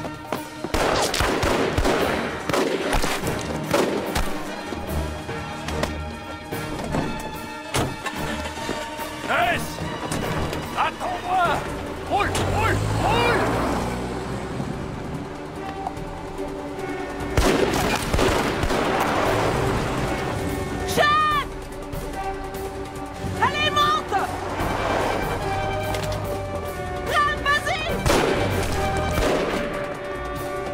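Film gunfight soundtrack: repeated rifle gunfire, in clusters of shots, over a steady action music score, with shouted voices at times.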